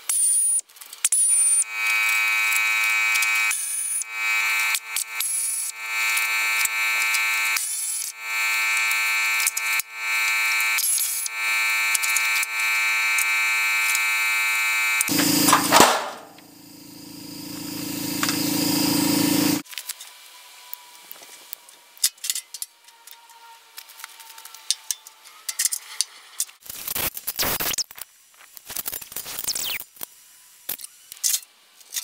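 Pneumatic wrench running in repeated bursts of about two seconds, a steady high whine, as bolts are spun out of a welder's steel frame. About halfway through comes a sharp burst and then a lower tone that swells for a few seconds, followed by quieter clicks and rattles of loose metal parts being handled.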